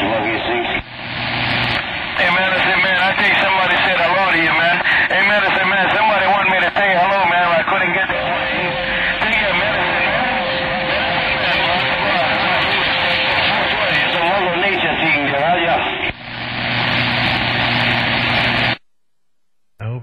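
CB radio receiver audio on 27.025 MHz: a loud wash of static and hiss with garbled, wavering, overlapping voices from distant skip stations, too distorted to make out words. It cuts off suddenly near the end as the signal drops out.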